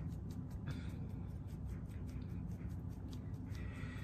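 Faint, rapid, even tapping of a hand-held fine-mesh sieve as powdered sugar is sifted over bread dough, about five light taps a second over a low steady hum.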